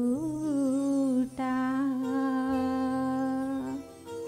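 A woman's solo voice singing a slow Telugu Christian devotional melody over soft sustained backing accompaniment. A short gliding phrase breaks off just after a second in, then one long held note fades near the end.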